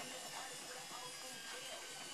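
Whirlpool AWM5145 front-loading washing machine running, a steady high-pitched motor whine over a hiss.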